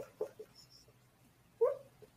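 Marker squeaking on a whiteboard while writing: a few short squeaks at the start and one longer squeak near the end.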